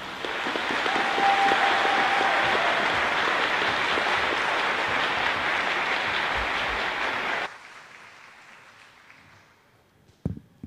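Audience applauding in a gymnasium. The clapping cuts off suddenly about seven and a half seconds in, leaving only a faint fading tail.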